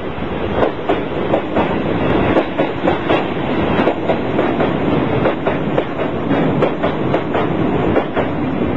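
Freight train wagons (container flats, then tank wagons) rolling past, their wheels clattering over the rail joints: a steady rumble with a regular run of sharp clacks, a few a second.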